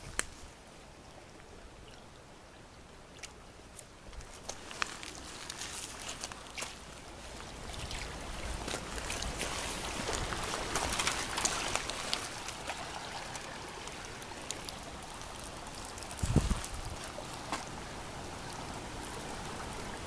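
Shallow creek water running and trickling, growing louder about halfway through, with scattered light clicks and a low thump near the end.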